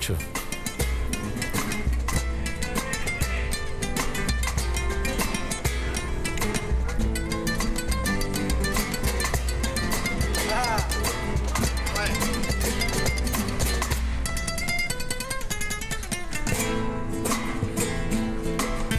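Spanish guitars of a Cádiz carnival comparsa playing an instrumental passage in flamenco style, with fast strummed and picked chords.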